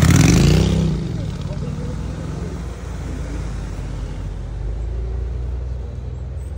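Steady low hum of a car engine running, heard from inside the car, with a voice trailing off in the first second.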